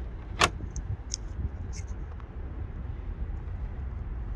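Wire with plastic crimp terminals being handled and pushed through a plastic car grille: one sharp click about half a second in, then a few faint light ticks, over a steady low rumble.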